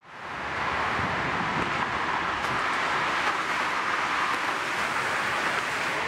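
Steady city street traffic noise, a continuous wash of passing cars, fading in at the start.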